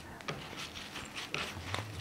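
Faint rustling and a few soft taps of a damp, quark-filled paper-towel wrap being folded over and pressed flat by hand on a wooden cutting board.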